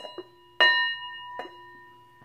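Brass Tibetan-style singing bowl held in the hand and struck with a leather-coated mallet: two light taps, then a firm strike just after half a second in and a softer one about a second later. Each strike leaves the bowl ringing with several steady overtones that slowly fade.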